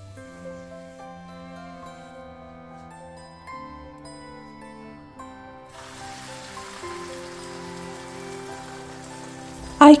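Soft background music with sustained notes. About six seconds in, beaten egg mixture poured into a preheated, oiled frying pan starts sizzling, a steady hiss under the music that lasts to the end.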